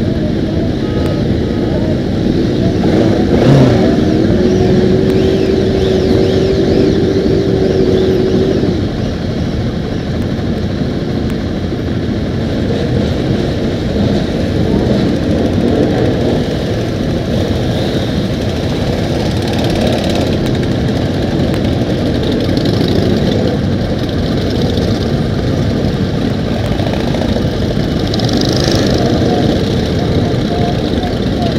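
A crowd of motorcycles idling together, a steady low rumble with occasional revs. About three seconds in, a single steady tone rises briefly and then holds for about five seconds before cutting off.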